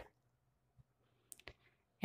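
Near silence, with two or three faint short clicks about a second and a half in.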